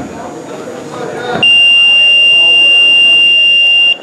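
Match timer buzzer sounding one loud, steady high tone for about two and a half seconds, starting about a second and a half in and cutting off suddenly: time is up in the grappling match. Shouting voices come before it.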